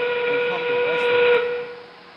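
FRC field's endgame warning, a recorded steam whistle marking 30 seconds left in the match: one steady note held for about a second and a half, then cut off, leaving a fading echo.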